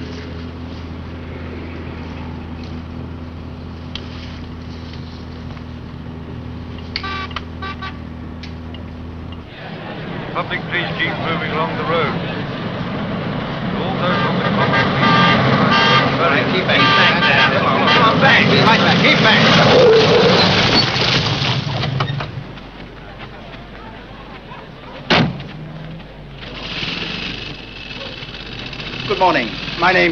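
A car engine runs steadily, heard from inside the cabin. After about ten seconds it gives way to a crowd of people talking at once, which grows louder and then dies down. Near the end there is one sharp knock.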